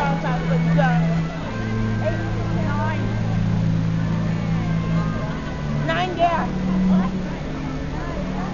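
Crowd voices chattering and calling out over a steady low hum that shifts pitch a few times, with a burst of louder calls about six seconds in.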